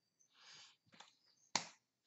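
Hand contact while signing in sign language: a short hiss early on, a faint click about a second in, then one sharp slap about one and a half seconds in, the loudest sound.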